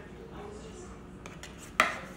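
A plastic plate knocking once against a table near the end, sharp and short, after a few faint handling clicks.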